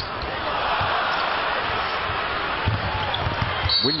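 Basketball bouncing on a hardwood court during live play, a few short thumps, over the steady noise of an arena crowd; a commentator's voice comes in right at the end.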